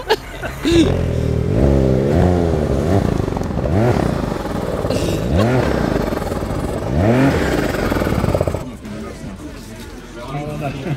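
Ski-Doo snowmobile engine running and revved in several short blips, its pitch rising and falling with each, until it stops near the end.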